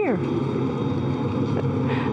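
Steady hum and hiss of the International Space Station's cabin ventilation fans and equipment, with a few faint high whines running through it. A spoken word trails off with a falling pitch at the very start.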